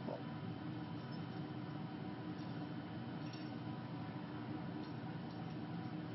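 Steady low room hum with a few faint light clicks.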